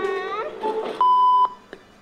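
A brief voice, then about a second in a single steady high-pitched electronic beep lasting about half a second, cutting off abruptly.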